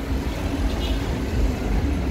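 Cairo metro train running at the platform, a steady low rumble.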